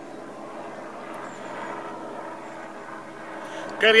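A steady low hum of background noise with faint even tones in it, and a man starts speaking right at the end.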